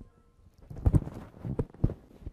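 A quick, irregular run of knocks and thumps, the two loudest about a second apart.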